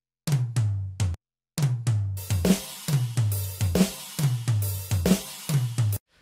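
Programmed drum kit played back in a DAW, led by low, pitched tom hits. It plays briefly, stops, then restarts about a second and a half in as a steady beat, with cymbals coming in above it.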